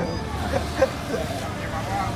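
Street ambience: a steady low rumble of road traffic, with indistinct voices of people nearby.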